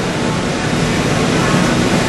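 Steady machinery and air-handling noise inside the operator's cab of a running Bucyrus-Erie 1250-B walking dragline, with no distinct knocks or tones.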